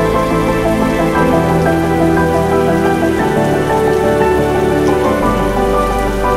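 Steady rain falling, mixed with soft background music of sustained chords that change every two seconds or so.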